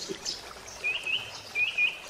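A small bird chirping: four short, high chirps in two pairs, each ending in a quick upward flick, about a second in and again near the end.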